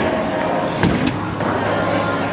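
Steady rumble of a busy bowling alley: balls rolling down the lanes and pin machinery, with two dull knocks, one at the start and one just before a second in.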